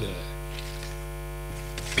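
Steady low electrical mains hum underlying the recording.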